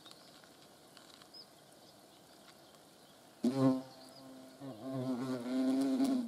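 European hornets' wings buzzing in flight at close range: a short buzz about three and a half seconds in, then a longer, steady, low-pitched buzz from about four and a half seconds on.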